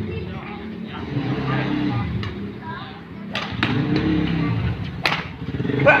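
Badminton rackets striking the shuttlecock during a rally: a few sharp pops roughly a second apart, over a steady low background hum.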